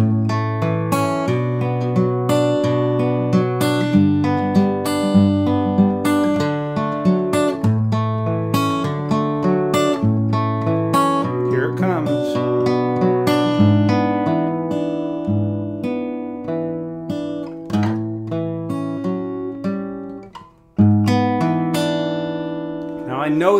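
Steel-string acoustic guitar, capo on the second fret, fingerpicked through a chord progression with an alternating bass, one plucked note after another. The playing breaks off briefly near the end before a final chord rings out.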